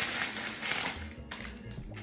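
Clear plastic packaging crinkling as a bag of pink hair rollers is handled, loudest in the first second and then fainter, over background music.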